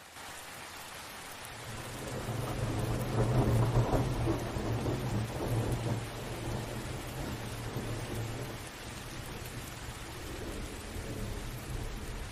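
Steady rain with a long roll of thunder: the rumble builds from about two seconds in, is loudest around four seconds, and dies away over the next few seconds, with a softer grumble near the end.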